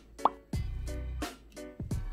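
Background music with a steady beat and low bass, with one brief sound rising sharply in pitch about a quarter second in.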